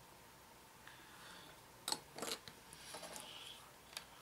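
Plastic model-kit parts being handled: light rustling and clicking, with two sharper clicks close together about two seconds in, then quiet room tone.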